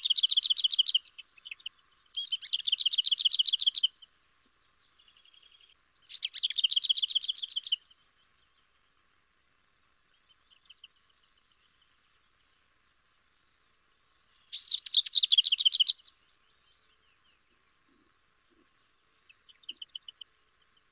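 Lesser whitethroat singing: four short, dry rattles of fast repeated notes, each lasting about a second and a half, with faint soft notes in the gaps.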